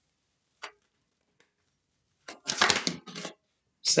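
Tarot cards being shuffled by hand: a faint tap about half a second in, then a short burst of card noise a little past halfway.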